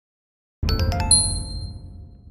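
Channel logo sting: a few quick bell-like dings over a low rumble, starting suddenly about half a second in and ringing away.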